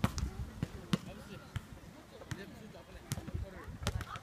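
A basketball being dribbled on an outdoor hard court: about six sharp bounces at a loose walking pace, with faint voices in the background.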